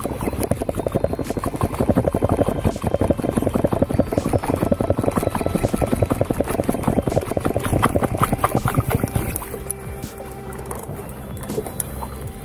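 Background music over a conventional jigging reel being cranked quickly, a fast run of ticks that eases off about ten seconds in.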